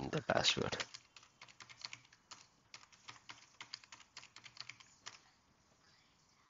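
A brief spoken sound at the very start, then a computer keyboard being typed on to enter a password: a long run of quick keystrokes that stops about five seconds in.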